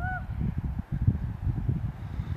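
Wind buffeting the phone's microphone: an uneven low rumble. A short call rises and falls once at the very start.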